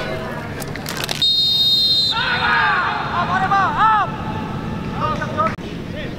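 A referee's whistle blown once in a single long blast about a second in, followed by players shouting on the pitch.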